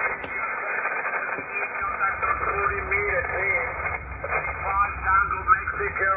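Icom HF transceiver's speaker playing 40 m lower-sideband receive audio: a steady hiss of band noise with faint, hard-to-read voices under it. It cuts in abruptly at the start.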